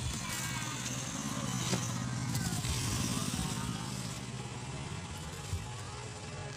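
Road traffic: a steady engine hum, with one vehicle growing louder through the middle and then fading as it passes.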